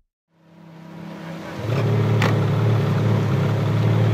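A snowmobile and a Ferrari F430 Spider's V8 idling side by side. The engine sound fades in from silence over the first second or so and holds steady and loud from about halfway, with one sharp click a little after two seconds in.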